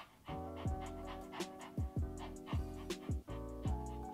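Background music with a steady beat and held synth notes, starting a moment in after a brief dropout.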